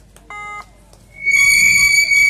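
Kabaddi umpire's whistle: a short beep about a third of a second in, then a loud, steady whistle blast starting a little after one second and held for about a second and a half.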